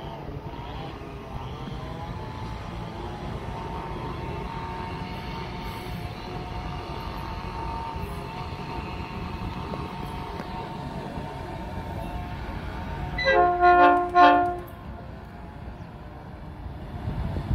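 Diesel locomotive approaching: a steady low rumble with a faint whine, then a few short, loud horn blasts near the end.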